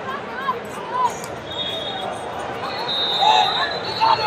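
Wrestling shoes squeaking on the mat in short, repeated chirps, over the steady murmur of voices in a large hall.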